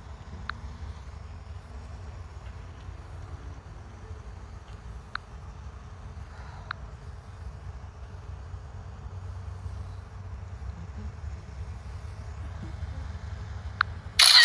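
Steady low outdoor rumble on the phone's microphone, with a few faint single ticks spread through it.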